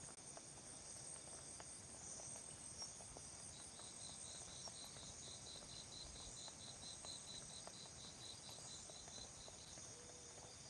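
Faint chorus of night insects: a steady high-pitched drone, joined from about four seconds in by a second insect calling in even pulses about four times a second until near the end.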